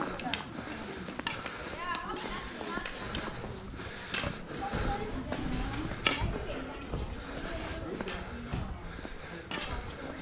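Indistinct voices of people talking, with footsteps and a few light knocks on the stone paving.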